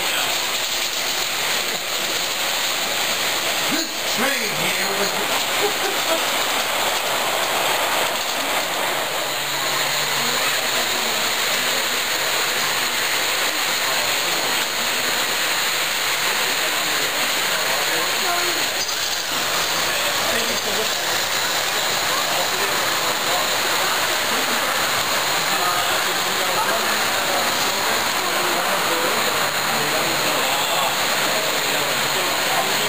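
Steady rumbling hiss of O scale model trains running on the layout's track, under indistinct background voices.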